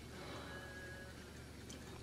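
Quiet room tone with faint hiss and no distinct sound event, apart from a brief, faint thin tone a little over half a second in.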